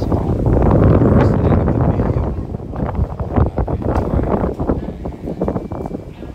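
Wind buffeting the microphone as a gusty low rumble, loudest in the first two seconds and then fluctuating.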